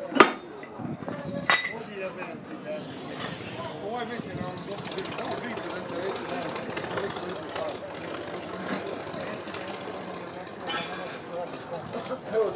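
Two sharp metal clanks in the first couple of seconds as loose scrap plough parts are handled and dropped into a wheelbarrow, followed by a steady murmur of people talking in the background.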